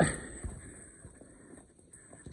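The tail of an excited shout fades out right at the start, then footsteps on the forest floor and spruce branches brushing past the person walking.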